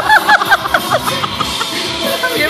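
High-pitched laughter in quick repeated bursts that fade out about a second in, over background music.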